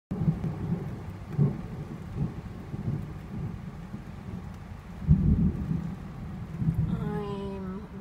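Thunderstorm heard from inside a vehicle cab: steady rain on the roof and windshield, with low rolling thunder rumbles coming and going, the loudest about five seconds in.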